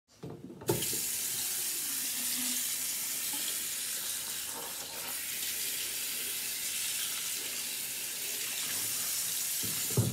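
Bathroom sink faucet running in a steady stream, splashing into the basin and over a head of hair held under the spout. The flow starts with a knock just under a second in.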